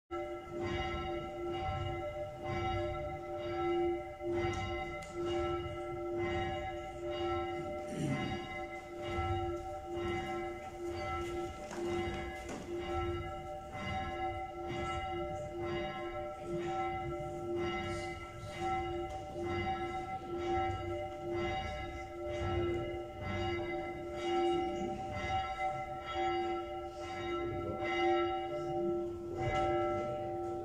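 Church bell tolling, struck over and over at a steady pace, each strike ringing on into the next so the same set of tones sounds without a break.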